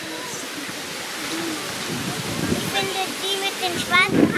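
A steady rushing noise, with short high-pitched voices calling out several times in the second half.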